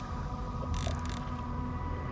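Wind rumbling on the microphone over the steady hum of the outboard motor idling in neutral, with a brief hiss about a second in.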